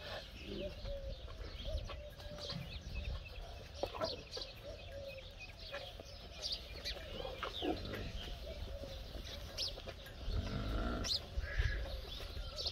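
Small birds chirping and calling again and again, with a low rumble in the last two seconds.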